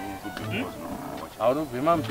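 A man's voice talking over background music, the voice coming in about halfway through.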